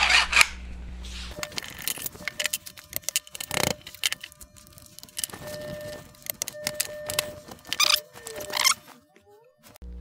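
Clamps being loosened and a wooden glue-up jig knocked apart on a wooden workbench: scattered metal clicks, knocks and wooden clatters, the loudest knock about three and a half seconds in.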